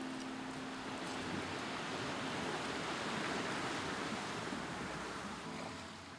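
Gentle sea surf washing in, a soft steady hiss that swells and eases, as the last acoustic guitar chord dies away at the start.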